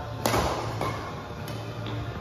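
Badminton racquets hitting a shuttlecock in a rally: three sharp hits, the first about a quarter-second in and the loudest, the others about half a second and a second later, each ringing briefly in the hall.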